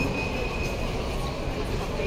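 Busy airport terminal hall ambience: a steady low rumble of building and crowd noise, with a short, thin, high steady tone in the first moment.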